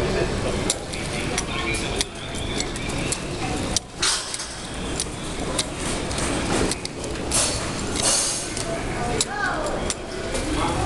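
Large, emptied shop interior: indistinct voices over a steady low hum, with scattered clicks and clinks, and a short falling squeak about nine seconds in.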